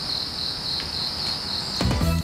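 Insects trilling steadily at a high pitch over a soft hiss. Music with a low beat comes in near the end.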